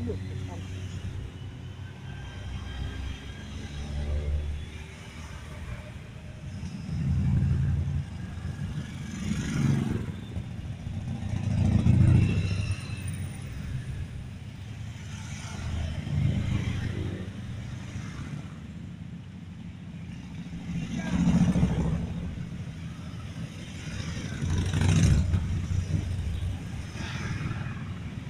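A column of cruiser and touring motorcycles riding past one after another, each engine's sound swelling as the bike comes close and fading as it goes by, with louder passes every few seconds.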